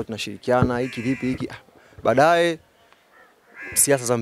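Only speech: a man talking in Swahili into press microphones, with one long drawn-out syllable about two seconds in and a short pause after it.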